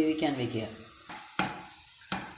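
A voice speaking briefly at the start, then a single sharp knock about a second and a half in: a spatula striking a non-stick frying pan as sliced onions are stirred.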